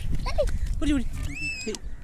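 Children's voices in short calls and bits of speech, with one high-pitched call about one and a half seconds in, over a low rumbling noise.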